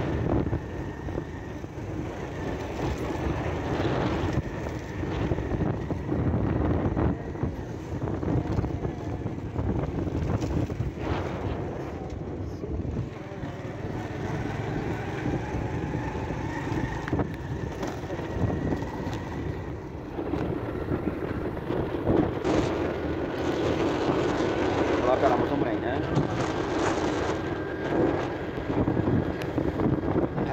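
Motorcycle ride: wind rushing over the microphone, with the bike's engine running underneath, steady throughout.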